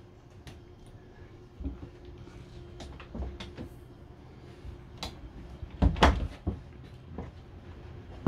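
Motorhome interior door and cupboard fittings being handled: a scattering of light clicks and knocks from latches and panels, the loudest a cluster of knocks about six seconds in.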